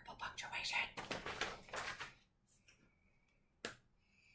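Paper rustling and handling noise for about two seconds as a magazine is lowered and set down, then a faint short squeak and a single sharp click near the end.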